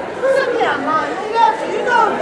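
Speech only: actors talking on stage.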